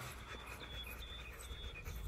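Faint panting of a six-week-old Rottweiler puppy held close to the phone, with a few brief, thin, high-pitched peeps.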